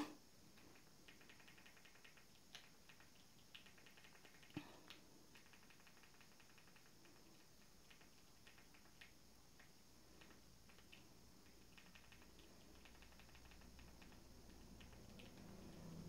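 Near silence: room tone with faint, irregular clicks of Fire TV Stick remote buttons being pressed to type on an on-screen keyboard.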